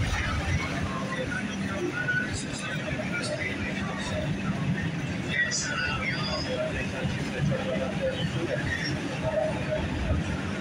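Inside a New York City subway car in motion: the train runs with a steady low rumble, with faint voices and scattered short high sounds over it.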